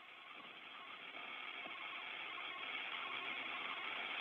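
Steady hiss of radio static on the Soyuz docking communication channel between calls, slowly growing louder.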